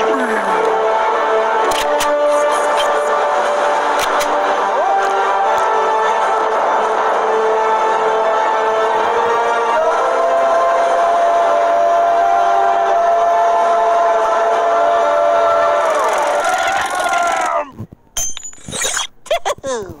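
Soundtrack of an animated cartoon: music with long held tones and wordless character voices, breaking up near the end into short silences and sharp sounds.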